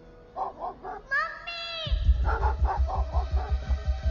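A dog barking in short bursts, with a drawn-out, falling yelp about a second in. About two seconds in, film-score music with a fast, heavy pounding bass pulse starts under further barks.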